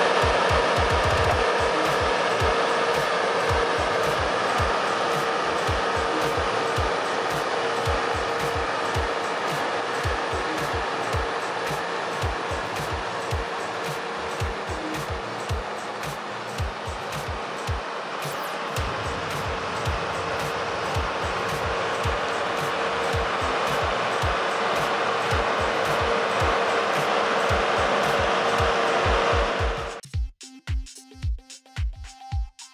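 Asphalt paver's diesel engine running steadily with a loud, even roar as the machine drives up onto a ramp trailer, under background music with a regular beat.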